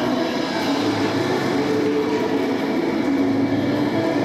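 Quad roller-skate wheels rolling on a wooden gym floor, a steady rumble, with the routine's music playing over loudspeakers.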